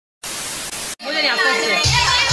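A short burst of white-noise static, like a detuned TV, lasting under a second after a moment of dead silence: an editing transition effect. Voices follow about a second in, and dance music with a heavy beat comes back in near the end.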